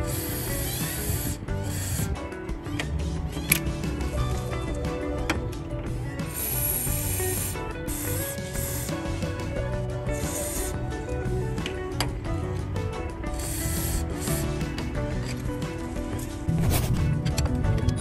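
Aerosol lubricant spray hissing in three short bursts of about a second each, near the start, about six seconds in and about ten seconds in, aimed at an alternator mounting bolt, over background music.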